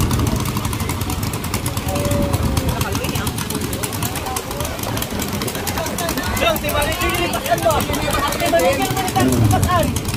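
Small 7 hp racing-boat engines running together at the start line, a fast steady drone with their propellers churning the water. Crowd voices and shouting join in from about six seconds in.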